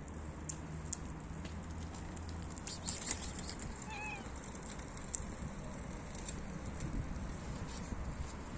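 A tortoiseshell cat gives one short, faint meow about four seconds in, over a steady low background hum.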